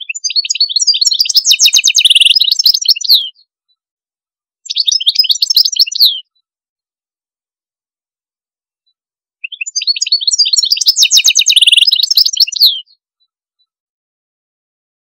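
A songbird singing three phrases of rapid, trilled notes. The first and last are long and alike, and the middle one is short, with dead silence between them.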